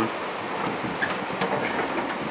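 Steel tool-cabinet drawer rolling on its metal slides: a steady rumble with a few faint clicks.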